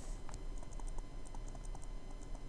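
Stylus tapping and scratching on a tablet screen during handwriting: quiet, irregular small clicks.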